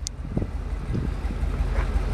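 A vehicle engine idling with a low, steady rumble, with wind noise on the microphone.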